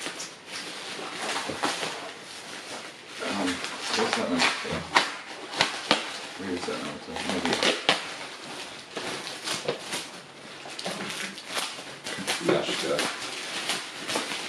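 Cardboard box and plastic packaging being handled and pulled apart during an unboxing: a run of rustles, crinkles and small knocks, with short bits of quiet talk or laughter.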